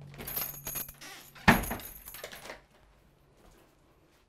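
A clinking, rattling metallic clatter for about a second, then one sharp knock about a second and a half in that rings briefly.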